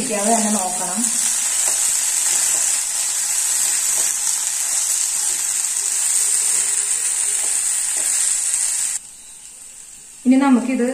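Shredded potato and onion frying in oil in a kadai, sizzling steadily while being stirred with a spatula, with a few light scrapes against the pan. The sizzle cuts off suddenly about a second before the end.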